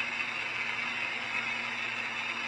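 Holmer Terra Variant 600 self-propelled slurry applicator heard from inside its cab as it drives: a steady hum with an even hiss over it.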